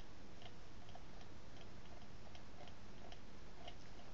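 Faint ticking of a computer mouse's scroll wheel, about two clicks a second, over a steady low hiss.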